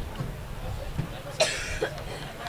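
A single short cough about one and a half seconds in, over faint background voices.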